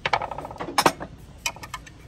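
Hard bathroom accessories, a tray and a tumbler, clinking and knocking against a glass display shelf as they are picked up and moved. A ringing clink comes at the start, then a sharp knock, then a quick run of small clicks.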